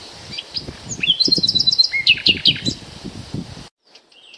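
Songbirds chirping and singing in quick, overlapping notes over a low rustling, cutting off suddenly just before the end.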